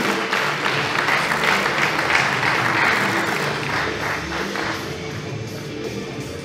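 Audience applause over music. The clapping thins out and fades in the last couple of seconds while the music carries on.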